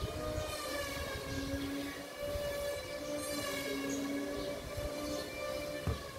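Wind buffeting the microphone, with a steady held tone and its overtones sounding over it, from a source that cannot be placed.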